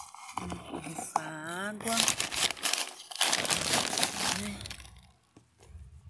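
Plastic bag of potting soil crinkling and rustling as soil is poured from it into a pot, in two spells of about a second and a half each. A short wavering vocal sound comes just before.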